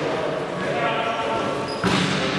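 Indoor basketball game sounds in a reverberant sports hall: players' voices calling out, a held pitched call or shoe squeak in the middle, and a sharp knock of the ball or a foot on the court near the end.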